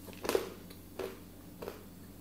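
Three short, faint clicks about two thirds of a second apart over quiet room tone.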